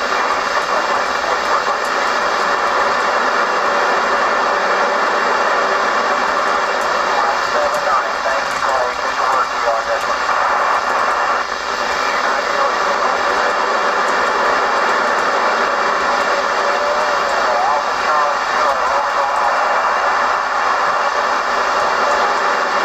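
A Kenwood TR-7950 2-metre FM transceiver tuned to AO-85's 145.980 MHz satellite downlink gives a steady rush of FM receiver noise from its speaker. Faint, wavering voices relayed through the satellite's FM repeater break through the noise now and then.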